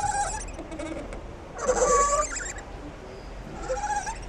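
Sound effects of a production-company logo ident: short animal-like calls over a hiss, swelling to their loudest about two seconds in.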